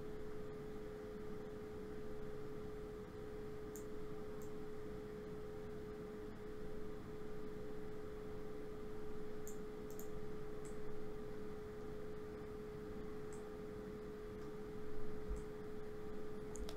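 A faint, steady single-pitched hum that holds one pitch throughout, with a few faint, brief clicks scattered through it.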